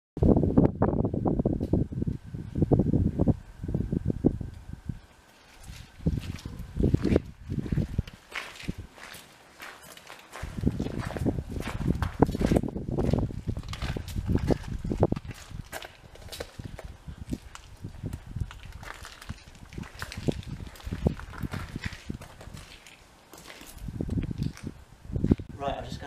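Footsteps crunching on gravel, with gusts of wind buffeting the microphone in uneven surges.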